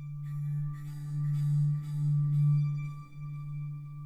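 Meditation background drone: one sustained low tone with faint higher ringing overtones, swelling and easing in slow waves about once a second.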